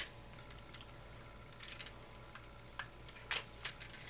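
A few faint clicks and light rattles as a hand-held plastic RC car front suspension assembly (hub carriers and A-arms) is handled and turned, over a low steady hum.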